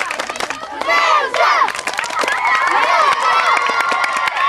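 A crowd of schoolchildren cheering and shouting in high voices, with many hands clapping.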